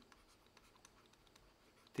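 Faint taps and scratches of a stylus writing on a tablet, just above near-silent room tone.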